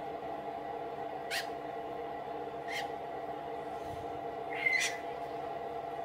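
Newly hatched blue-and-gold macaw chick giving three short, high squeaks, the last one longer and louder, over a steady low hum.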